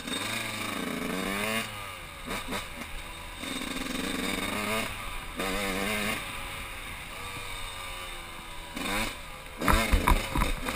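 A 1999 Yamaha YZ125's two-stroke single-cylinder engine, heard from the rider's helmet, revving up and dropping back several times as it is ridden. A burst of loud thumps comes near the end.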